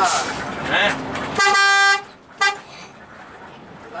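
Bus horn sounding one steady pitched blast of about half a second, followed by a short second toot.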